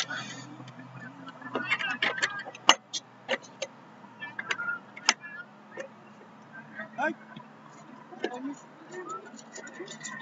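Open-air rugby field sound: short, distant calls and shouts from players and onlookers, some rising in pitch, with scattered sharp clicks and knocks over a faint low hum.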